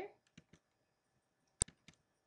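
Faint computer mouse button clicks, a few in all, the sharpest about one and a half seconds in, followed quickly by two softer ones.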